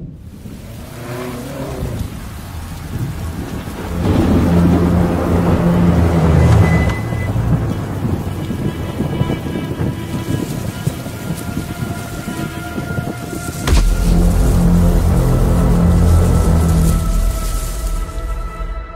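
Film-trailer soundtrack of rain and rolling thunder under a dark, sustained music drone. Deep rumbles swell about a quarter of the way in, and a sharp thunderclap about three-quarters of the way through sets off a heavy low rumble.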